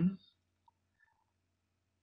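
A man's drawn-out "um" trails off in the first moment, then near silence: a faint low hum of room tone with a couple of very faint ticks.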